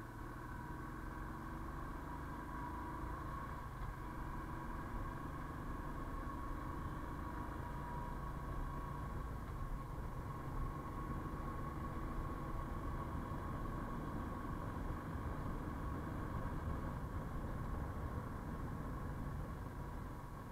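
Motorcycle engine running steadily while riding, with road and wind noise, heard from a camera mounted on the bike. A steady high whine sits above the engine.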